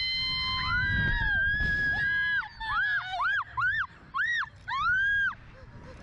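A rider on a Slingshot reverse-bungee ride screaming: one long high-pitched scream held for about two seconds, then a run of about six short screams, each rising and falling in pitch.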